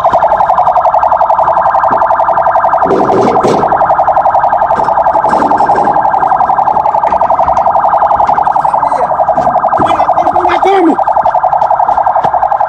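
A loud electronic alarm-like tone, rapidly pulsing at a steady pitch and running without a break, with faint voices underneath.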